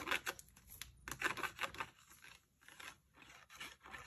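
Cardstock being handled on a craft table: a series of light paper rustles, scrapes and taps, busier at first and thinning out in the second half.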